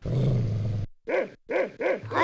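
A dog growling for under a second, then barking three times in quick succession.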